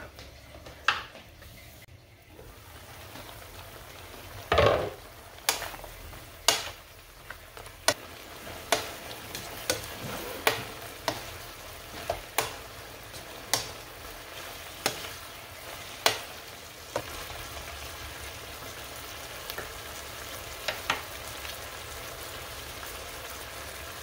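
Chicken and pumpkin sizzling in a frying pan, with a wooden spatula knocking against the pan about once a second as the food is stirred. A louder clunk comes about four and a half seconds in, and the knocks thin out in the last few seconds.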